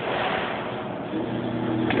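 Claw machine's gantry motor running as the closed claw travels back to the prize chute: a steady mechanical whir over even background noise, with a faint low hum coming in about halfway through.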